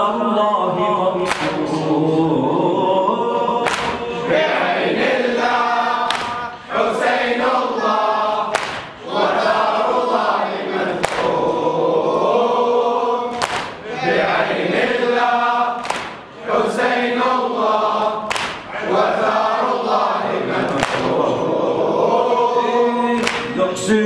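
Men's voices chanting a Shia latmiya lament in unison, led by the reciter, with a sharp strike about every two and a half seconds: the mourners' chest-beating (latm) keeping time to the chant.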